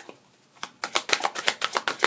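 A deck of tarot cards being shuffled by hand: a rapid run of soft card clicks that starts a little over half a second in.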